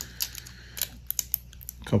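A handful of light, scattered clicks and ticks from fingers handling a sheet of small stick-on fly eyes.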